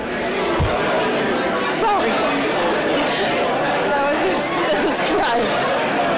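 Crowd chatter: many people talking at once in a large room, a steady babble of overlapping voices.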